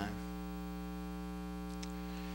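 Steady electrical mains hum, a stack of even buzzing tones with no change, carried through the sound system; a faint tick comes near the end.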